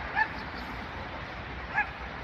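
A dog barking twice, two short high yips about a second and a half apart.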